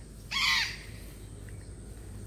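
A single harsh parrot squawk, about half a second long, shortly after the start, over a steady low outdoor background.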